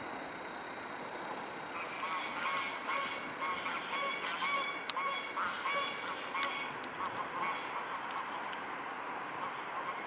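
Waterfowl calling: a run of short repeated calls, about two a second, starting about two seconds in and fading out near eight seconds, over a steady background hiss.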